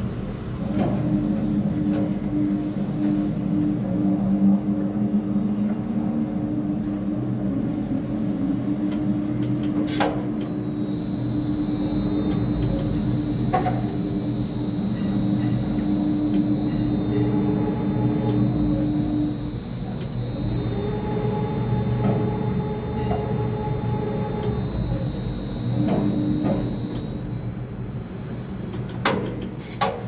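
Tower crane's electric slewing and hoist drives heard from inside the operator's cab: a steady motor hum with a thin high electronic whine that rises and falls in pitch as the crane moves the concrete bucket. A few sharp clicks break in.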